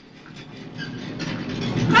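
A low rumble with faint rattling from a film soundtrack grows steadily louder, the sound of the burning wheelchair rolling toward the guard. A man's shout breaks in at the very end.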